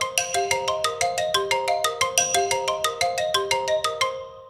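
Short musical interlude: a quick, even run of short bright pitched notes, about seven a second.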